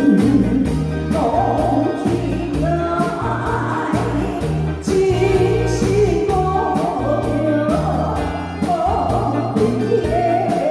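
A woman singing into a microphone over a live band of drum kit, electric guitars and keyboard, in a continuous sung line with a steady drum beat.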